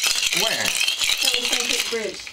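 Ice cubes rattling in a glass Mason-jar cocktail shaker being shaken hard, a continuous crackly clatter.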